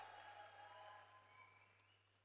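Near silence: faint room tone with a low steady hum, fading away to dead silence near the end.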